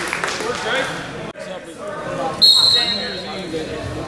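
A referee's whistle blown once, short and shrill, about two and a half seconds in to start a wrestling bout, over the murmur of voices in a gym.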